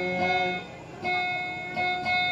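Kutiyapi, the Maranao two-stringed boat lute, being plucked in a dayunday melody. There are three ringing notes: one at the start, one about a second in, and one near the end.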